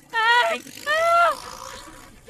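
A woman's two loud, high-pitched cries of alarm, the second longer, as two men on a moped pull away beside her. A faint haze of street and engine noise follows.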